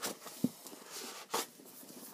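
A hardback book being handled and its pages flicked close to the microphone: a few short papery rustles and a small knock.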